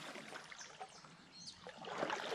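Faint trickling and lapping of water around a kayak being paddled, with a few small drips.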